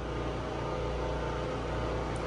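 A steady machine hum, a low drone with an even set of overtones, like a fan or motor running.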